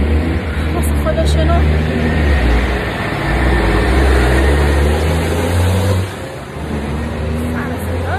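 A heavy road vehicle's engine running close by in street traffic: a loud, deep rumble that holds for about six seconds, then falls away as it moves off.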